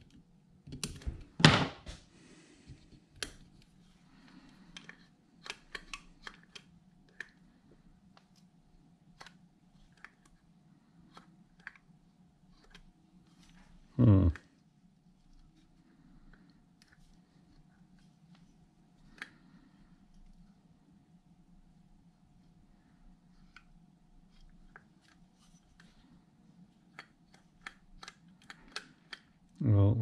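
Small metal carburetor parts and a screwdriver clicking and tapping now and then as a Solex PICT28 carburetor is reassembled by hand, with a loud knock about a second and a half in and another loud short sound about fourteen seconds in. A faint steady hum lies underneath.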